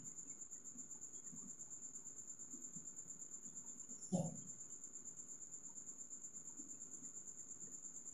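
Faint, steady high-pitched cricket trill, pulsing about eight times a second, with one brief soft low sound about four seconds in.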